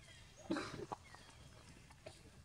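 A young long-tailed macaque gives one brief, harsh call about half a second in, lasting around half a second.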